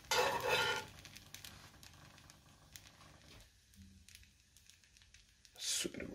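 Breaded chicken cutlet frying in oil in a pan: a loud burst of sizzling in the first second as it is turned over with a metal spatula, then faint crackling, and another short burst of noise just before the end.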